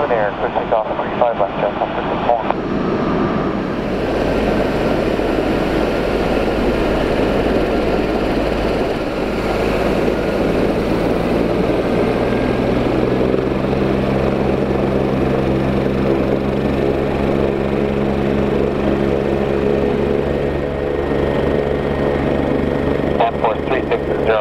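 Four Pratt & Whitney F117 turbofans of a C-17 Globemaster III at takeoff power on the takeoff roll. A loud, steady jet roar builds over the first few seconds, and from about halfway in, low droning tones and an even low pulsing join it.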